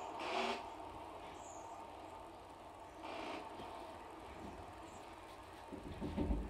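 Quiet room tone with a low hum and two brief soft rustles, one about half a second in and another about three seconds in.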